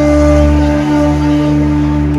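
Background music: one long held note, flute- or pad-like, over a steady low drone.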